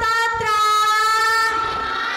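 A woman's singing voice holding a long, steady, high note into a microphone, with a short break about half a second in. The note weakens in the last half second.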